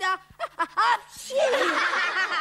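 A group of children laughing together. A few short laughs come first, and they swell into loud, overlapping laughter about a second and a half in.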